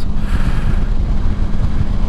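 Honda ST1100 Pan European's V4 engine running at a steady cruise, with wind rushing over the microphone.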